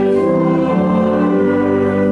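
A small group of voices singing a hymn in long held notes over keyboard accompaniment, moving to new notes about two thirds of a second in.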